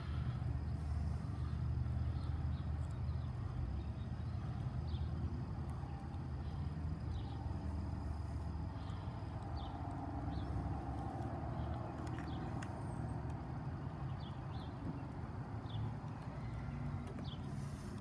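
Steady low rumble of street traffic, with faint short high chirps now and then.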